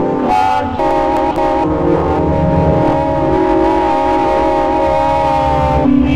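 Industrial synth-punk music: a held chord of several sustained tones over a pulsing bass, shifting about a second in and holding until near the end, with a horn-like sound.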